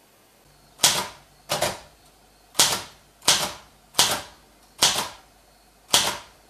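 Manual typewriter being typed on slowly: seven separate key strikes, each a sharp clack of a typebar hitting the paper, spaced a little under a second apart.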